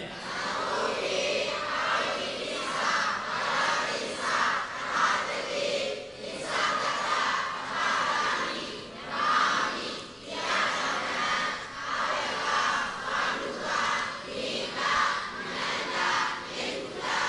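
A large congregation of many voices reciting together in unison, in a steady run of phrases that rise and fall about once a second.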